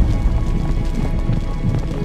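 Dramatic intro music with a steady, rhythmic low beat. The tail of a deep boom hit fades away at the start.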